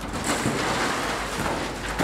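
Excavator demolishing a building: a steady, noisy clatter of tearing and breaking material with a low rumble beneath.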